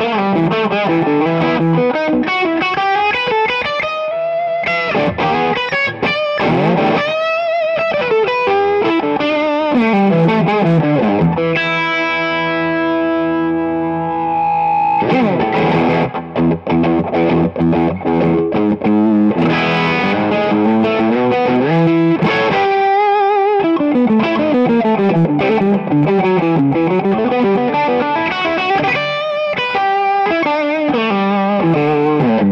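Josh Williams Mockingbird semi-hollow electric guitar played on the bridge pickup through overdrive and boost pedals: a distorted lead solo of string bends and fast runs. About halfway through, one note rings out held for about three seconds.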